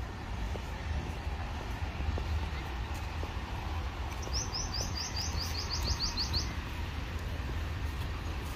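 A bird calls with a quick run of about a dozen short, high notes, starting a little past halfway through and lasting about two seconds, over a steady low background rumble.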